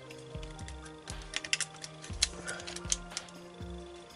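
Background music with a steady low beat, over a run of small sharp clicks and taps from about a second in: a screwdriver and loosened screws on a laptop motherboard as it is worked free of its plastic base.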